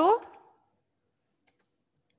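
A woman's voice trails off on a rising pitch, then a quiet stretch broken by two or three faint, short clicks of a computer keyboard about a second and a half in, as a blank line is typed into a document.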